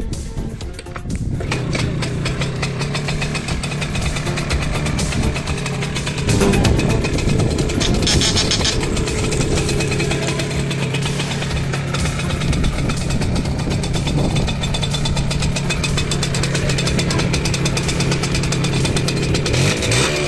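Small two-stroke engine of a Romet Motorynka moped (Romet 023) running with a fast, even run of firing pulses, getting louder about six seconds in.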